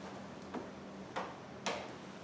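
Three light, sharp clicks from handling a violin case and bow, unevenly spaced and each a little louder than the last.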